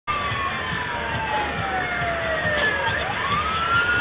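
A siren wailing: one long tone sliding slowly down in pitch, then turning and rising again about three seconds in, over a steady background noise.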